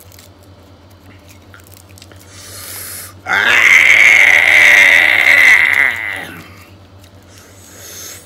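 A man's long, drawn-out vocal exclamation lasting about three seconds, starting about three seconds in, loud and held on one wavering pitch. Before it come faint crackles of charred grilled catfish skin being pulled apart by hand, over a steady low hum.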